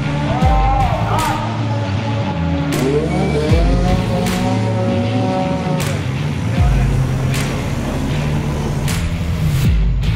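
A car engine revving hard, mixed over a rock music track with a steady beat. The revs rise about a second in, climb again about three seconds in and hold high for a few seconds.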